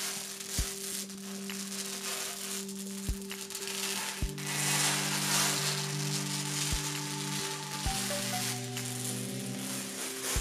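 Protective plastic film crackling as it is peeled off a tempered glass PC case side panel, over background music with held notes and a low, regular beat.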